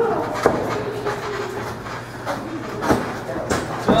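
A handful of sharp slaps and thumps, spread across the few seconds, from wrestlers striking and grappling in a ring, over a steady low hum in the hall.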